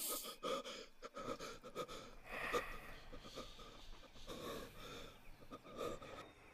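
A man gasping and breathing hard in short, irregular bursts as he struggles while pinned down.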